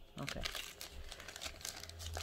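Plastic packaging crinkling as it is handled, a run of short crackles.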